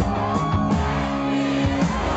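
Live rock band playing loud: electric guitars, bass guitar and drum kit, with a bending note near the start.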